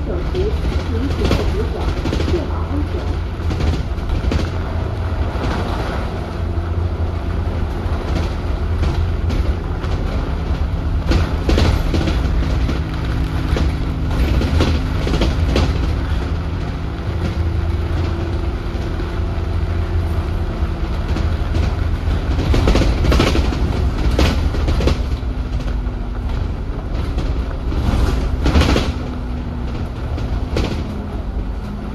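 Cabin sound of an Alexander Dennis Enviro400 double-decker bus (E40D chassis) on the move. The diesel drivetrain gives a steady low drone with a faint whine that shifts slightly in pitch, and the body adds scattered sharp rattles and knocks, heaviest a little after ten seconds in, around twenty-three seconds and near the end.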